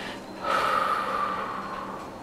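A woman's long audible exhale, starting about half a second in and fading away, as she settles into a forward fold after rising from a lunge.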